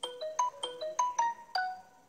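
A short ringtone-style melody of about eight quick, bright, marimba-like notes stepping up and down. The last note is held a little longer before it fades out.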